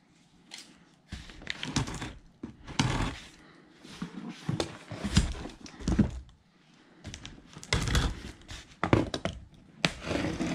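A cardboard shipping box is handled and its packing tape cut with scissors: a run of irregular knocks, scrapes and rustles of cardboard and tape.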